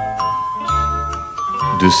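Light background music: bell-like mallet notes, a new one about every half second, over soft bass pulses. A man's voice comes in near the end.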